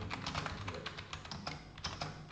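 Fast typing on a computer keyboard: an irregular run of key clicks, several a second.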